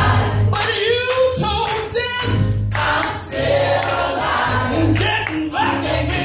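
Gospel choir singing in full voice with a lead singer on a microphone, over a steady low bass accompaniment.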